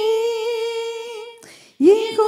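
A woman's voice singing unaccompanied into a microphone, holding one long note with a slight vibrato. She breaks off for a breath about a second and a half in, and the next note starts just before the end.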